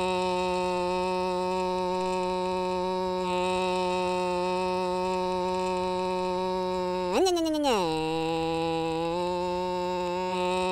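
Engine sound effect of a cartoon vehicle: a steady, even engine drone that revs up briefly about seven seconds in and drops back to the same pitch.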